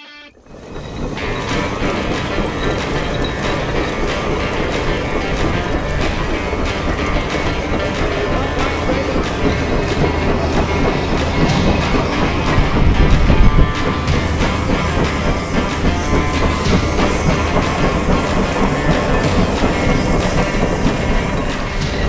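The 150 Case steam traction engine running under steam: a dense, steady clatter of machinery with hissing steam. It is loudest around the middle.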